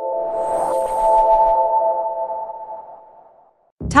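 Electronic logo sting: a held synthesized chord of several steady tones with a soft swoosh and a high shimmer in the first second, fading out over about three seconds.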